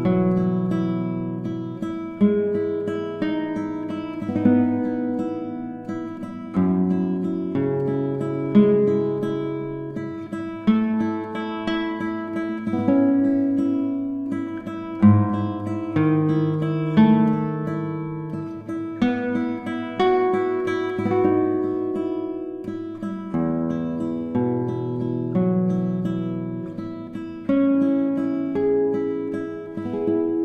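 Solo acoustic guitar playing a slow instrumental piece: single plucked notes ring out and fade over held bass notes, with a fresh attack every second or two.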